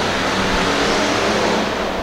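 Hobby stock race cars' engines running together as the pack laps a dirt oval, a steady dense engine noise that eases off slightly near the end.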